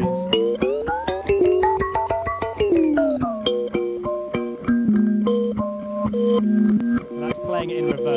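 Kalimba notes picked up by a contact mic and replayed through a homemade audio-freeze buffer effect. The held notes glide up in pitch, then drop back about three seconds in, and after that settle into a fast, stuttering loop of short plucked tones from the small buffer.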